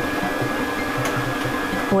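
The blower of an air-mix lottery drawing machine runs steadily, blowing the numbered balls around inside its clear plastic globe.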